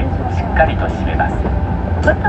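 Steady low rumble of an airliner cabin, with the Japanese safety announcement about the life vest heard over the cabin speakers.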